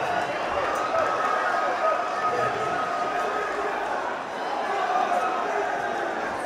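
Boxing crowd reacting to a knockout: many voices shouting and talking over each other, with no single clear speaker.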